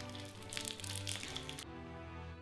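Plastic candy-bar wrappers crinkling and tearing as they are opened by hand, the crackling stopping about a second and a half in, over quiet background music.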